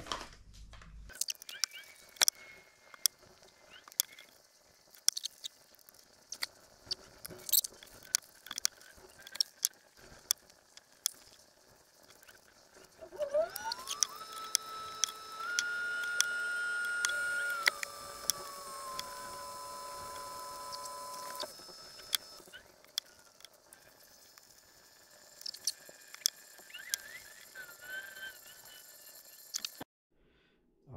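Scattered clicks and taps of epoxy bottles, tools and wooden ring blanks being handled on aluminium foil while the rings are glued up with two-part epoxy. In the middle a whine rises in pitch, holds for a few seconds, then steps down twice and cuts off.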